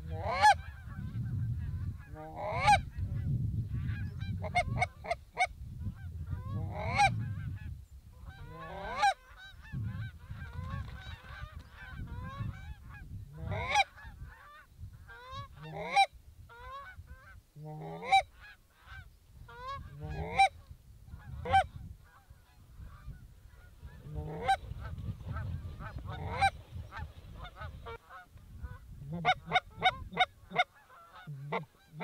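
Canada geese honking: loud, sharp honks every couple of seconds, some in quick bursts of two or three, over a low rumble that comes and goes.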